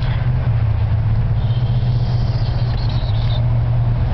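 CNG-equipped Ford F-250 engine idling with a steady low hum. A faint high-pitched chirping whine rises over it for a couple of seconds in the middle.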